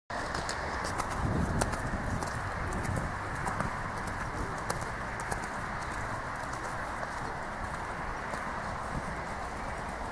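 Horse cantering on sand footing, its hoofbeats heard over a steady background rush, with scattered sharp clicks.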